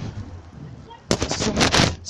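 A quick run of loud, close knocks and rubbing on the microphone about a second in, lasting under a second: handling noise from a phone being moved in the hand.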